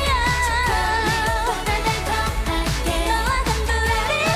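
K-pop dance-pop song: a woman sings a lead line over a steady electronic beat and bass.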